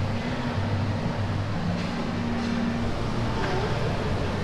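Steady low background hum of an indoor shopping mall's ambience, with a faint held tone that fades out near the end.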